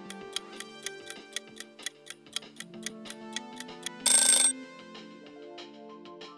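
Countdown-timer sound effect over a background melody: a clock ticking about four times a second, ended about four seconds in by a loud, short ring signalling time's up.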